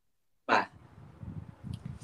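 Silence for about half a second, then a short vocal sound from a man, followed by faint low rumbling microphone noise.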